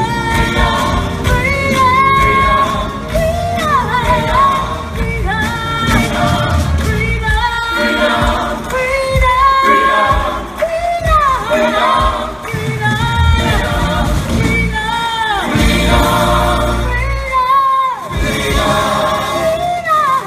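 Music with singing over instrumental accompaniment, the sung line gliding and ornamented throughout.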